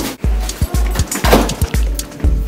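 Background music with a steady, heavy bass beat.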